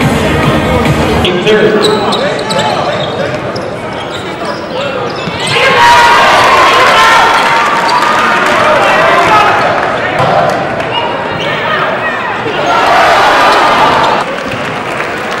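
Live game sound in a gym: a basketball bouncing on the hardwood amid crowd voices. The crowd noise swells loud about halfway through and again near the end; a music track stops about a second in.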